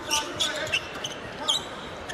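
Basketball being dribbled on a hardwood court, several separate bounces, over background arena voices.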